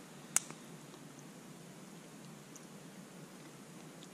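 Faint sounds of a man chewing a mouthful of roast chicken with his mouth closed, with one sharp click just after the start.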